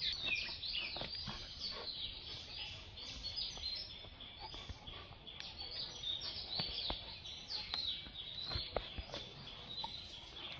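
Many small birds chirping continuously in a dense chorus of short, high, overlapping chirps, with a few scattered soft knocks.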